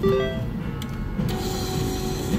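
Three-reel mechanical slot machine starting a max-credit spin: a short cluster of electronic tones as the spin button is pressed, then the reels spinning under a steadier held tone from just over a second in.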